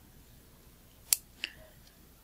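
Fine metal tweezers clicking against a lens diaphragm's small coiled return spring and metal housing while unhooking the spring: one sharp click about a second in, then a fainter one just after.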